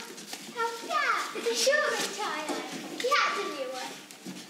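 Children's voices speaking dialogue in Manx Gaelic, several short lines in turn.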